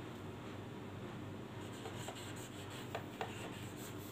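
Faint strokes of a marker pen on a whiteboard as a word is handwritten, with two light ticks of the marker about three seconds in.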